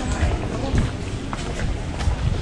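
Indistinct voices of people talking nearby, over a steady low rumble on the microphone and a few small clicks.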